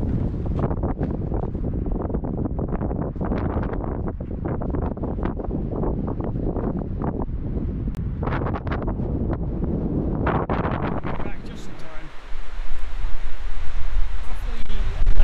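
Wind buffeting the camera's microphone in a continuous rumble. About twelve seconds in it cuts to louder, heavier gusts hitting the microphone.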